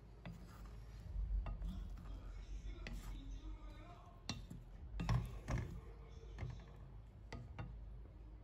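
Wooden spoon stirring sliced strawberries in a metal pan, with soft, scattered knocks of the spoon against the pan.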